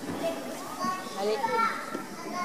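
Children's voices chattering and calling out among spectators in a large, echoing sports hall.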